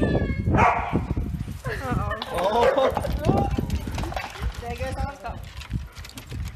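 A pack of corgi puppies running over a tiled floor, their paws pattering quickly, mixed with people's voices.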